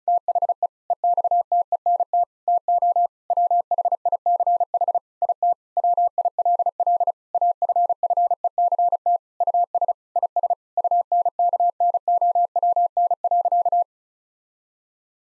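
Morse code sent at 35 words per minute: a single mid-pitched tone keyed rapidly on and off in short and long elements with brief word gaps. It spells out the sentence "The extent to which it will affect us is unknown."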